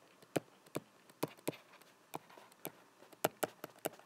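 Stylus tip tapping on an iPad's glass screen during handwriting: a string of short, sharp, irregular taps, about four a second.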